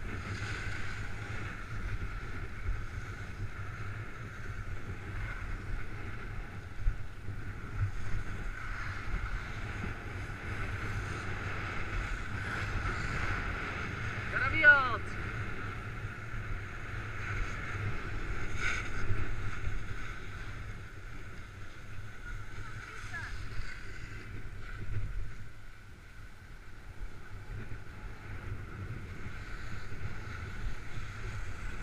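Wind rushing over a head-mounted camera's microphone and skis hissing over packed snow during a downhill run. About halfway through there is a short pitched sound, the loudest moment.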